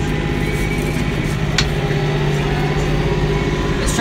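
Kioti 5310 compact tractor's diesel engine running steadily while the tractor drives along, heard from the operator's seat. A single short tick sounds about a second and a half in.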